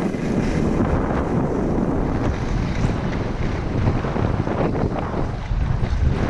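Wind buffeting a moving skier's camera microphone, a steady low rushing, with skis scraping over packed groomed snow. It comes in suddenly as the skier sets off downhill.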